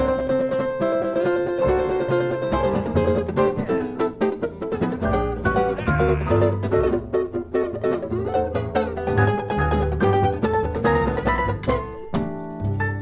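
Jazz trio playing an instrumental passage: hollow-body jazz guitar picking a busy line to the fore, with upright bass notes underneath.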